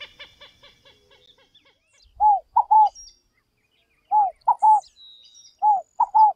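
A common gallinule's series of short clucks, slowing and fading over the first second and a half. Then a scaled dove (rolinha-fogo-apagou) calls three times, about two seconds apart, each call three short notes.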